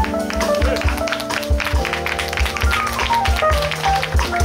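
Live jazz band playing: an alto saxophone phrase ends just after the start, then electric bass, keyboard and drums carry on in a steady groove with busy cymbal and drum strikes.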